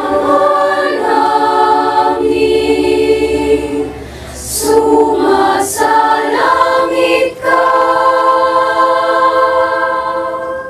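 A young women's choir singing a sung prayer unaccompanied, in sustained chords. The singing dips briefly about four seconds in, followed by two sharp "s" sounds, then moves on into a long held chord.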